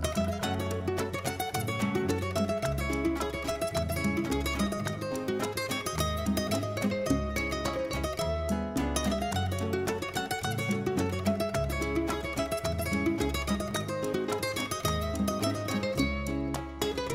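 Instrumental introduction to a Peruvian criollo song, with acoustic guitars picking the melody over a bass line; the singing has not yet started.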